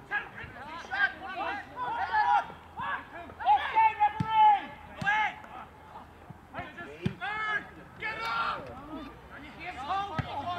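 Footballers shouting and calling to one another across the pitch during play, with three sharp thuds of the ball being kicked, about four, five and seven seconds in.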